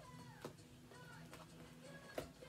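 Faint background music with a shifting melody, a light click about half a second in and a few fainter clicks.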